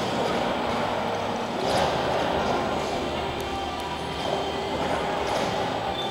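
Hall ambience: background music and indistinct voices over a steady room din, with a couple of faint knocks.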